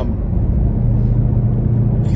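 Road and engine noise inside a moving car's cabin: a steady low rumble with a low engine drone.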